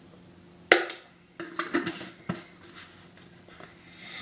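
Knocks and clatter of a scoop and supplement containers handled on a kitchen counter while measuring out powder. One sharp knock about a second in is followed by a quick run of lighter knocks and clicks.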